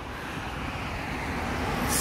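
Road traffic going by: a steady wash of car noise that grows slowly louder through the moment.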